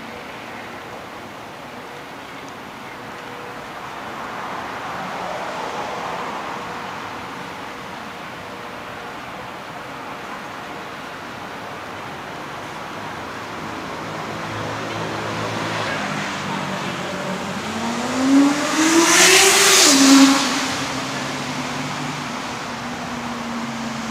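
Street traffic: a vehicle passes about five seconds in, then a loud vehicle accelerates past near the end, its engine pitch climbing, dropping sharply as it shifts gear, then holding a steady note.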